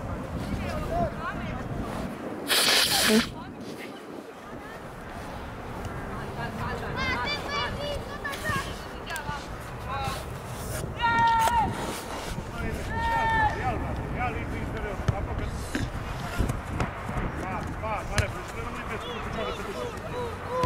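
Shouted calls from players on a youth football pitch, short raised voices carrying across the field over a steady outdoor noise bed. A brief, loud rush of noise comes about two and a half seconds in.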